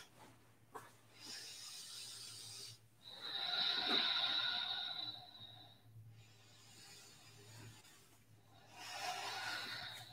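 A person breathing slowly and deeply while holding a resting yoga pose: a soft breath, then a longer, louder one carrying a faint whistle, and another breath near the end.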